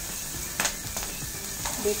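Green chillies and garlic cloves sizzling in oil in a metal kadai, with two short knocks of the metal spatula against the pan, about half a second in and again near the end.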